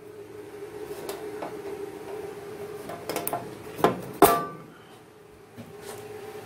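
Metal parts being handled: light clicks and clinks, then two sharper metallic knocks about four seconds in, the second the loudest and ringing briefly, over a steady faint hum.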